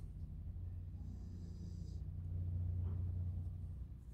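A faint, steady low hum of background noise, with no distinct handling sounds standing out.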